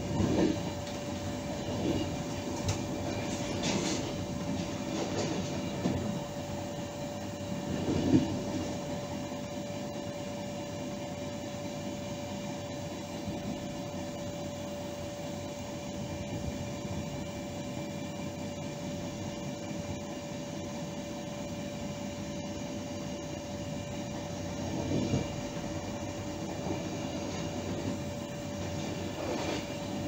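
Train running along the track, heard from inside the driver's cab, with a steady hum under the running noise. The wheels knock over turnouts and rail joints several times in the first eight seconds, loudest about eight seconds in, and once more near the end.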